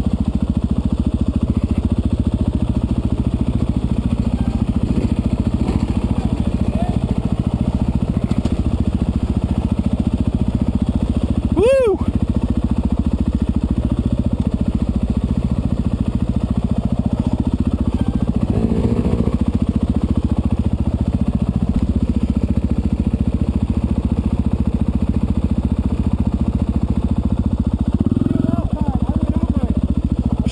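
Dirt bike engine running steadily at low trail speed, heard from on the bike being ridden. A short high call rises and falls about twelve seconds in.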